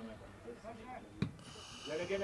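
Faint pitch-side sounds of an amateur football match: distant players' voices and, about a second in, a single sharp thud of a football being kicked.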